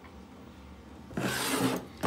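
A short rubbing, scraping noise lasting about half a second, a little over a second in, after a stretch of quiet room noise.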